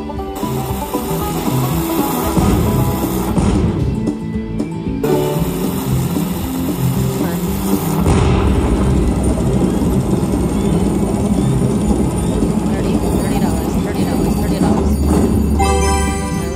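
Slot machine bonus-round sounds: electronic music and effects from the machine, with a deep boom about eight seconds in as a dynamite symbol explodes on the reels. Another low rumble comes near the end as the exploded symbol turns into a gold-nugget prize.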